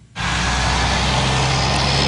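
Steady street noise with the low hum of idling vehicle engines, cutting in suddenly just after the start as a live outdoor microphone opens.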